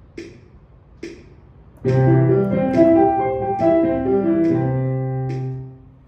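Metronome clicking at about 72 beats a minute, with two clicks alone before the piano comes in. Both hands then play a two-octave C major arpeggio on the keyboard, up and back down, ending on a held low C that fades out just before the end.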